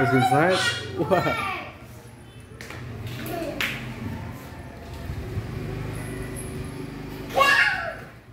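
A young girl's voice talking and calling out while playing, with a loud high-pitched cry near the end, over a steady low hum.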